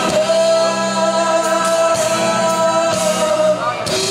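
Live band with electric guitar, bass and drums playing, with a singer holding one long note that ends just before the close, when a lower note takes over.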